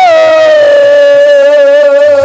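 A woman's voice holding one long sung note of Bengali kirtan, bending up into it at the start and then held steady.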